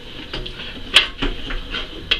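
Light metallic clicks and taps with one sharper clack about a second in, as a diamond-plate aluminium rollback bed is shifted by hand and lined up on a model truck's frame.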